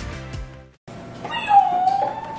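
Background music with a beat fades and cuts out a little under a second in; then a drawn-out, high-pitched squeal, like a girl's excited voice, starts.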